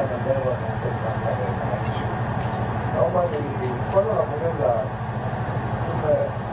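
Indistinct chatter of a waiting audience over a steady low engine-like hum.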